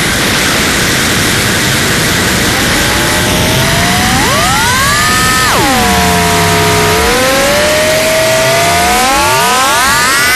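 Intro of a hardcore electronic dance track: loud noise with a stack of synth tones that slide up and down in pitch, then climb steadily through the last two seconds as a build-up, with no beat yet.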